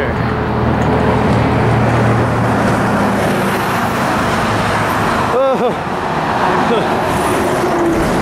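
Steady road traffic on the bridge roadway right alongside: tyre and engine noise from cars and a passing bus, with a low engine hum through the first few seconds.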